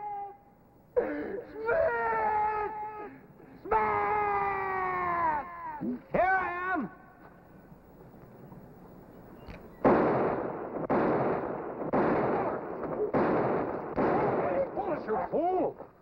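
A string of about five or six revolver shots, roughly a second apart, each trailing a long echo, in the second half. Before them a man gives long, loud, drawn-out shouts.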